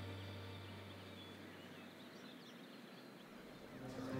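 Faint outdoor ambience with scattered distant bird chirps. A low bass note left over from background music fades out over the first couple of seconds.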